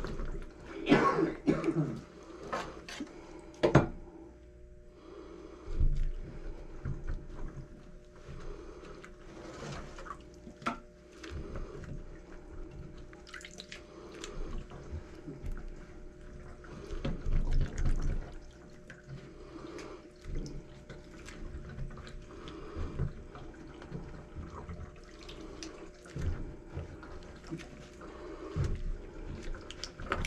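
A gloved hand sloshing and feeling around in a stainless-steel sink full of standing water, with irregular splashes, drips and small knocks. The water stands because garbage is sitting on top of the drain and blocking it.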